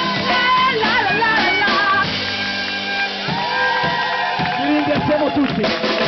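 Street band playing: violin leading the melody over drum kit and guitar. The music ends on a held chord about three seconds in, and people's voices follow.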